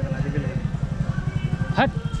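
A small engine idling close by: a steady, fast, low putter that runs on without change. A voice speaks briefly near the end.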